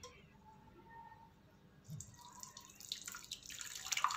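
Dark brewed tea concentrate poured through a stainless steel mesh strainer into a glass measuring jug, trickling and splashing. It starts faintly about two seconds in and grows louder toward the end.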